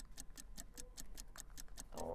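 Faint, fast, even ticking, about eight ticks a second.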